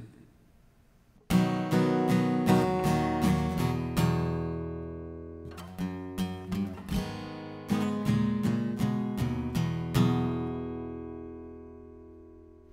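Acoustic guitar strummed in a song's intro, starting suddenly about a second in. A chord is left to ring and fade around the middle before the strumming picks up again, and the last chord dies away slowly near the end.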